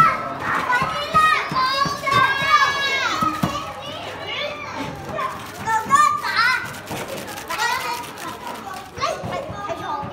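Young children shouting, squealing and chattering as they play together, several high voices at once, loudest in the first few seconds and again about six seconds in.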